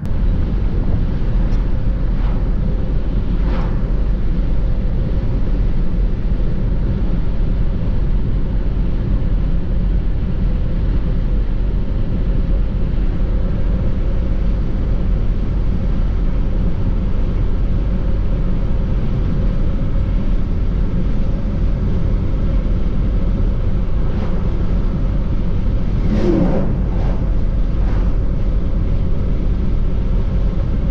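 Steady road and tyre noise of a car driving at cruising speed, heard from inside the cabin, with a low rumble underneath.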